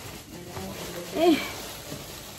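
Faint handling sounds of fingers and nails working at a jar lid, with a woman's short strained 'eh' about a second in.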